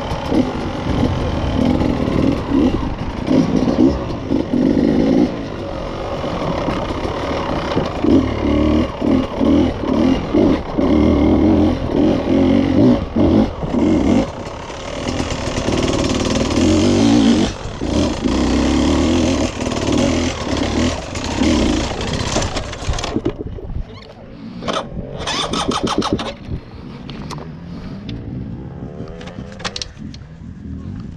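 Beta enduro motorcycle engine revving in repeated bursts as the throttle is opened and shut on a rocky climb. About three-quarters of the way through, the engine sound drops away, leaving quieter sound with a few sharp knocks as the bike comes to a stop.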